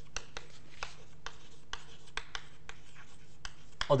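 Chalk writing on a blackboard: a run of short, irregular taps and scratches as a line of words is written.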